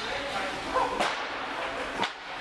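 A hockey puck being shot on ice: one sharp crack about a second in, with brief voices just before it.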